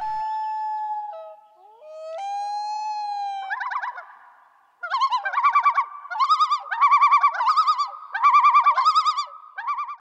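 Outro jingle of whistle-like tones: short upward glides into long held notes, then from about three and a half seconds in a run of rapid warbling, bird-like trills repeated in short phrases.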